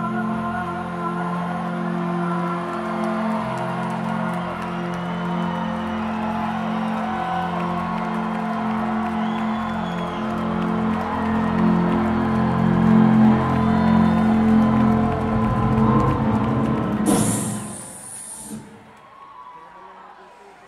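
Live rock band in a large hall holding sustained, droning chords, with scattered whoops from the crowd. About seventeen seconds in there is a brief loud hiss, then the music stops and only quieter hall sound remains.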